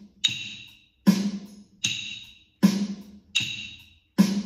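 Wooden rhythm sticks clicked together on half notes, one ringing click every two beats, over a steady electronic drum beat of about 80 beats a minute.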